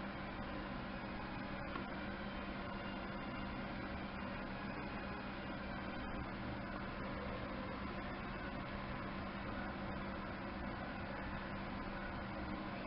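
Steady room tone: an even hiss with a constant low hum, unchanging throughout.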